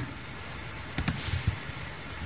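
Steady faint hiss of room tone through a live microphone, with a few small clicks about a second in and again half a second later.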